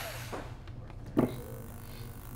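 A single sharp knock about halfway through as a small cordless grinder is set down on a tabletop, followed by a faint steady hiss.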